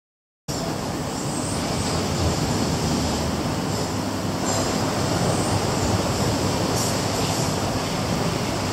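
Steady rush of sea surf along the shore, cutting in suddenly about half a second in after a moment of silence.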